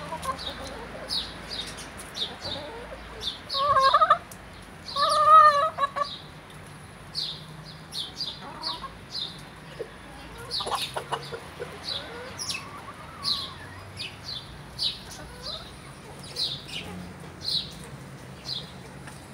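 Chickens feeding, with two loud drawn-out chicken calls about four and five seconds in and short high chirps repeating throughout.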